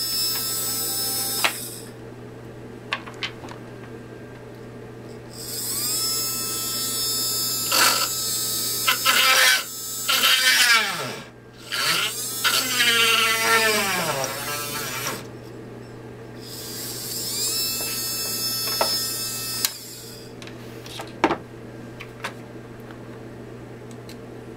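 Small 12-volt motor drill whining in three bursts as it drills holes through a perfboard PCB. The longest burst, in the middle, has a pitch that slides up and down.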